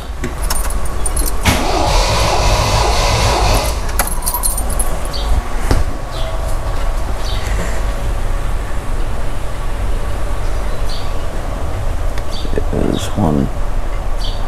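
The MGB's pushrod four-cylinder engine cranked over on its starter motor with the spark plugs removed. It turns over at a steady rhythm without firing, the cranking for a compression test.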